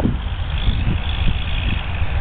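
Diesel freight locomotives working hard under heavy load: a loud, continuous low engine rumble.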